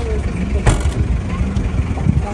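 Suzuki sedan's boot lid shutting with a single sharp thump about two-thirds of a second in, over a steady low rumble of vehicles and faint voices.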